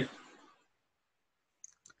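Near silence after a spoken word fades out, with a few faint, short clicks near the end.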